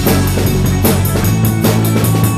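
A rock band playing an instrumental passage: drum kit with bass drum and crashing cymbals keeping a steady beat, with electric guitar and sustained low bass notes underneath.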